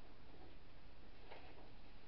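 Sheets of paper being handled: one soft, faint rustle about halfway through, over steady low room noise.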